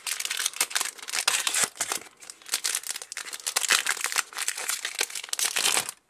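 Foil wrapper of a Pokémon Primal Clash booster pack being crinkled and torn open by hand: a dense, uneven run of crackles that stops just before the end.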